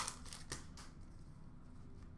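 Faint handling of hockey trading cards: a few soft clicks and slides of cards against each other in the first second.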